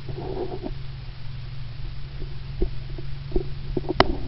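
Muffled thumps of running footsteps over a steady low rumble, picked up by a camera worn on a running body. A brief jumble of jostling sounds comes in the first second, then single thumps a little under a second apart.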